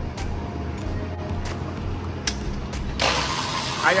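Workshop sound of hand tools on a car engine: a steady low hum with a few scattered sharp clicks. About three seconds in, the sound abruptly turns to a brighter hiss just before a man starts to speak.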